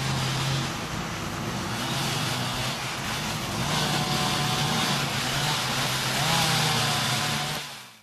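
Engines of parked utility trucks idling: a steady low hum under a broad outdoor noise, fading out near the end.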